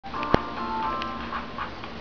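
A toy's electronic tune playing in steady, held notes, with one sharp click about a third of a second in.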